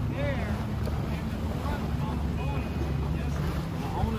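Boat motor running steadily while under way: a constant low drone, with wind and water noise.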